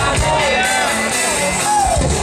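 Live band music over a concert PA, with a singing voice carrying the melody over guitar and drums.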